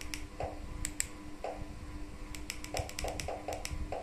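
Small plastic buttons, as on a remote control, clicked as the projector's file menu is stepped through: a few spaced clicks in the first half, then a quick run of about a dozen in the last two seconds.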